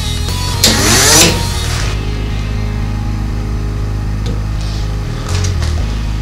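A small DC motor, switched on by a relay, whirs up in pitch for about half a second about a second in, over background music.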